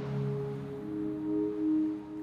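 Soft background music of steady held tones, with a new note coming in about a second in.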